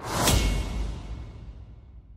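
A whoosh sound effect hits about a quarter second in, with a low rumble beneath it, then fades away steadily over the next second and a half.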